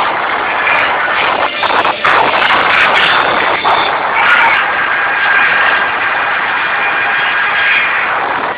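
Live rock band playing loudly, heard through an overloaded phone microphone so the sound is dense and distorted, with a held high note in the second half.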